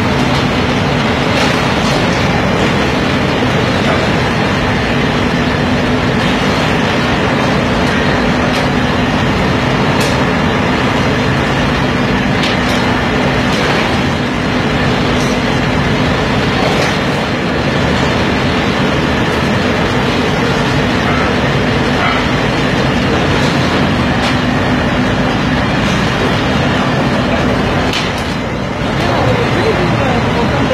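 Steel re-rolling mill running while red-hot rebar rods are rolled: a loud, steady machinery din with a constant hum and scattered clanks. The hum drops out near the end.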